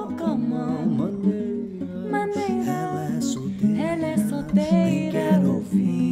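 A man singing a melody over fingerpicked acoustic guitar in a live song.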